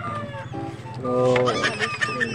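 A bird calling over steady background music.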